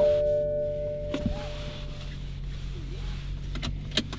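BMW M235i's turbocharged 3.0-litre inline-six idling at a standstill with a low, steady hum, heard from inside the cabin. Over the first two seconds a steady whine-like tone fades away, and there is a light click about a second in.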